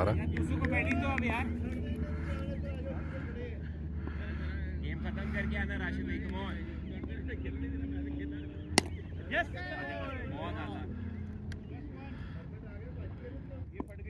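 Distant voices of cricketers calling across an open field over a steady low rumble, with a single sharp knock about nine seconds in.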